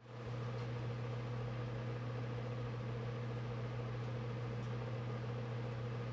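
A steady low-pitched mechanical hum with a faint hiss behind it, coming in abruptly at the start and holding unchanged.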